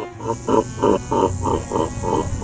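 A distorted, cartoonish evil laugh sound effect from a computer virus's skull: rapid repeated 'ha' pulses, about four a second, with a hiss of static coming in just after the start.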